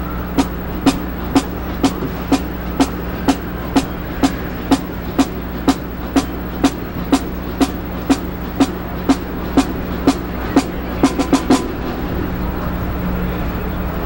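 Drumsticks clicking a steady tempo, about two clicks a second for some ten seconds, ending in a quick run of four faster clicks and then stopping: a marching band's snare tick setting the tempo before the band plays. A steady low hum runs underneath.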